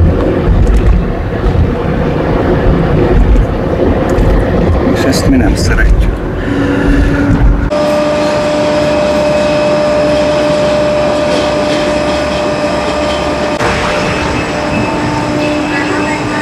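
Road noise inside a moving car's cabin, a loud low rumble. About eight seconds in it changes abruptly to a steadier hum with a held whine on top.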